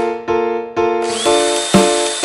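Background music with notes struck about twice a second, over a handheld electric drill boring small holes in copper sheet. The drill's high whine stops at the start and comes back about a second in, rising as the motor spins up.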